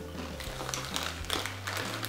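Chewing a baked potato chip (Bops): a scatter of short, crisp crunches in the mouth, over soft background music.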